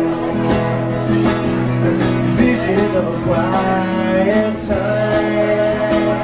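Live country-folk music: an acoustic guitar strummed in a steady rhythm, with a pitched melodic line that is held long near the end.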